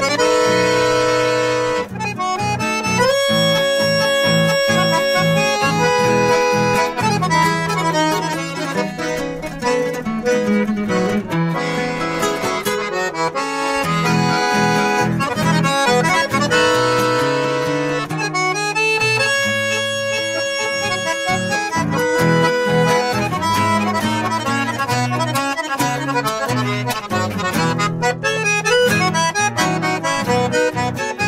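Piermaria chromatic button accordion and nylon-string acoustic guitar playing an instrumental duet: the accordion carries the melody in held notes and chords while the guitar plays a rhythmic accompaniment underneath.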